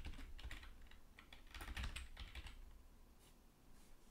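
Faint computer keyboard typing: short runs of keystrokes in the first two and a half seconds, thinning out towards the end.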